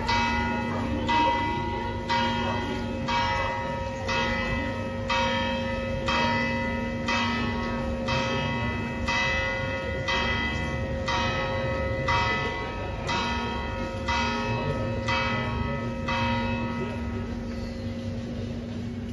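Church tower bells ringing in a steady rhythm, about one stroke a second, with the bells' deep hum carrying on between strokes.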